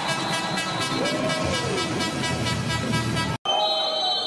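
Handball crowd noise with a long, steady horn note held over it, which cuts off abruptly near the end.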